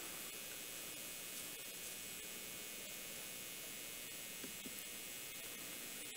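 Faint, steady hiss of room tone and microphone noise, with a couple of faint ticks about four and a half seconds in.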